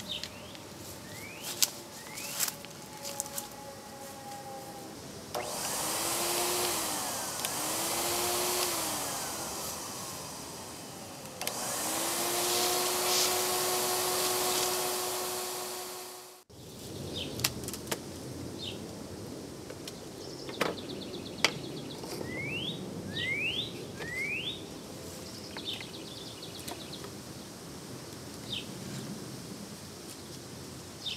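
Vacuum cleaner running a plastic-bottle bee vacuum that sucks bees off the comb. It starts about five seconds in, its pitch rising and falling twice, then runs steadily and cuts off suddenly about halfway through. Birds chirp before and after, with a few small clicks.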